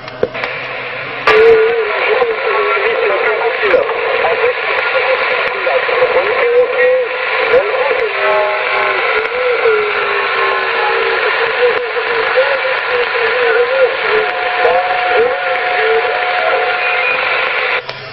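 Weak, garbled voice of a mobile CB station on 27 MHz, heard through the receiver's speaker and drowned in hiss and interference (QRM), so the words cannot be made out. A thin steady whistle of interference sits over it for a few seconds near the end.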